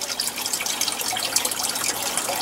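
Water running steadily from a pipe into an aquaponics tank, a continuous splashing flow.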